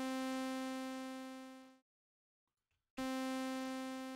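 Audiorealism reDominator software synthesizer playing one held note with a bright, buzzy sawtooth tone. The note fades and stops a little under two seconds in. After about a second of silence, the same note starts again abruptly.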